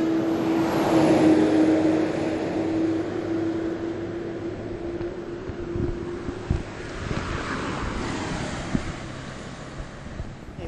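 Passing road traffic: the broad noise of cars going by swells to its loudest about a second in, fades, and rises again later as more vehicles approach. A steady low hum runs underneath and cuts off about two-thirds of the way through.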